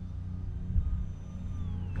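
Faint high whine of the Radiolink A560's small electric motor and propeller in flight, its pitch falling near the end, over a low rumble of wind on the microphone.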